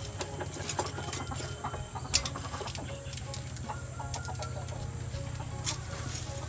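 Chickens clucking over a low steady hum, with two sharp clicks, about two seconds in and near the end, from metal tongs working a fish on a wire grill over charcoal.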